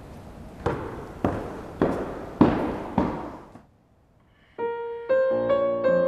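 Five evenly spaced knocks, about half a second apart, each ringing on in a reverberant hall. After a brief near-silent gap, a Schimmel concert grand piano starts playing, with notes held and overlapping.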